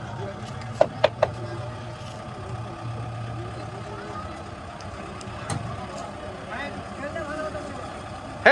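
Tractor's diesel engine idling with a steady low hum under the chatter of onlookers, with three sharp clicks about a second in.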